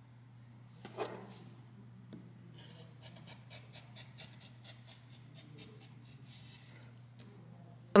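Faint rustling and rubbing of lace and mesh fabric pieces being folded and handled on a cutting mat, with a brief soft swish about a second in and a run of small ticks and rubs in the middle, over a low steady hum.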